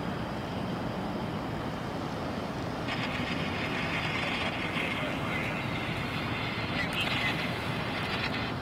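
Steady low rumble of idling vehicles and traffic. About three seconds in, a higher hiss joins it.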